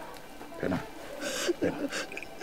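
A person's voice making a few short, quiet vocal sounds.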